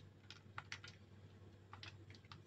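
Near silence with about half a dozen faint, light ticks: desiccated coconut being sprinkled by hand onto a crisp fried chonga.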